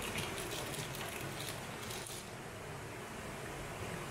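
Steady rush of river water flowing over rocks. In the first two seconds there are light crackling ticks from a paper spice packet being shaken out.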